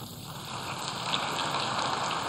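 Audience applauding in a large hall, building up about half a second in.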